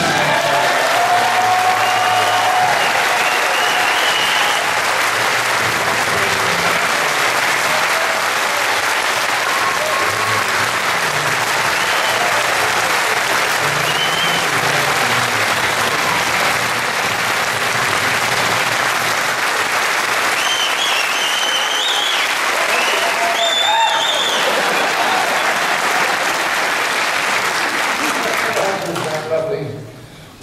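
Large theatre audience applauding long and steadily, with scattered cheers and whistles over the clapping. The applause dies away near the end.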